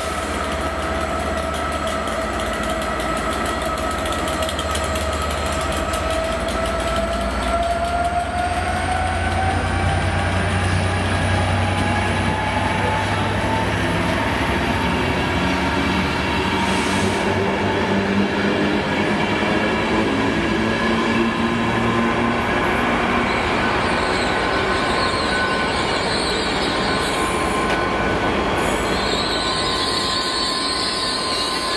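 Class 67 diesel locomotive, with its two-stroke V12 engine, pulling a train away past the platform: the engine note rises steadily over the first ten seconds or so and then holds, over a low rumble as the coaches roll by on the rails.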